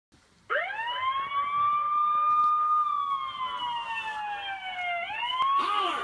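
A siren-like wailing tone. It rises sharply about half a second in, holds, sinks slowly, then climbs again near the end.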